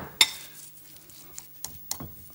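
A spoon stirring a mixture of mashed egg yolks and smoked meat, clinking against the bowl: one sharp clink about a quarter second in, then a few light taps near the end.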